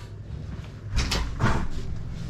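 A house's front door being unlatched and swung open, with a few sharp clicks and knocks about a second in.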